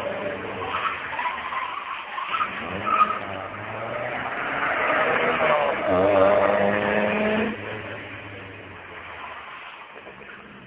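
Skoda 100 driven hard in slides, its engine revving with tyres skidding. The engine note builds in the middle and drops away suddenly about seven and a half seconds in, then fades.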